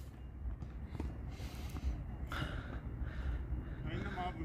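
Quiet outdoor tennis-court background between points: a steady low rumble with faint, indistinct noises and a single soft tap about a second in.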